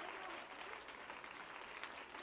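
Faint applause from a church congregation, an even patter of scattered clapping.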